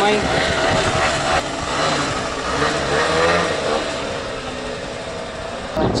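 Small motor scooter engine revving up as it pulls away, then fading gradually as it rides off.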